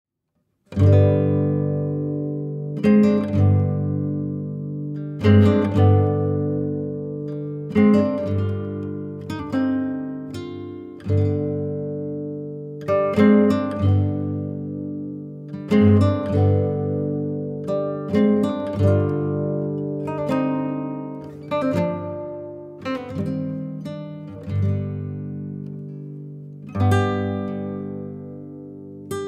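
Background music: an acoustic guitar strumming chords, each strum ringing out and fading before the next, every couple of seconds.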